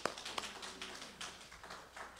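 Light, scattered hand clapping from a small group. It opens with one sharp clap and thins out toward the end.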